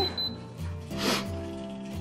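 Air Doctor 3000 air purifier's control panel giving two short high beeps as its power button is pressed to switch it on, over steady background guitar music.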